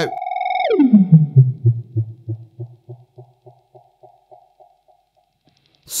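Gokko Magrane analog-style delay pedal self-oscillating in a steady high tone that dives sharply down in pitch as a knob on the pedal is turned. The runaway echoes then slow to about three repeats a second and fade away.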